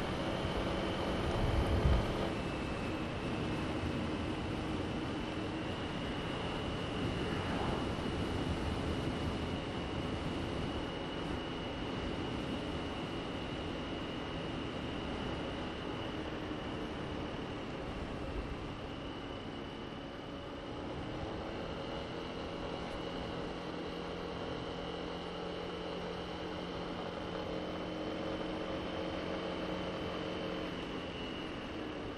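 Honda SH150i scooter's single-cylinder engine running at cruising speed, with wind and road noise over the microphone and a steady high whine above the engine note. The engine note dips about two-thirds of the way through and then picks up again, and there is a brief low buffet of wind about two seconds in.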